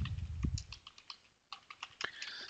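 Typing on a computer keyboard: a quick run of key clicks, a short pause a little after the middle, then a few more keystrokes near the end.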